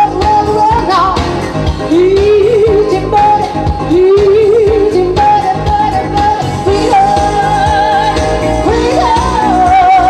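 A woman singing into a handheld microphone over instrumental accompaniment, holding long high notes with vibrato.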